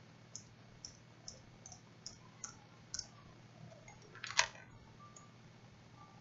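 Computer mouse clicking: about eight light clicks over the first three seconds, then one louder click a little past four seconds.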